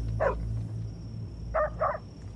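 Stray dogs barking: three short barks, one about a quarter second in and two in quick succession near the end.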